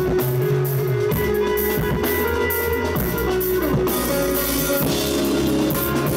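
Rock band playing live: electric guitars, bass guitar and drum kit in a steady, loud instrumental passage with no singing.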